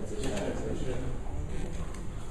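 Indistinct low voices in a small room.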